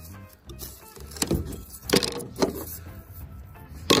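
A cut square of fiberglass boat deck being pried up and lifted off the flotation foam beneath, with a few sharp cracks and knocks as it breaks free.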